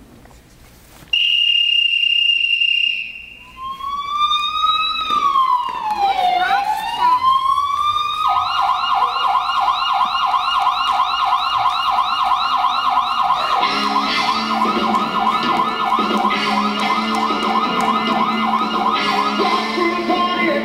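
Recorded police siren sound effect opening a routine's music track: a steady high tone, then a wail sliding up and down, then a fast yelping warble from about eight seconds in. About fourteen seconds in, music comes in underneath the siren.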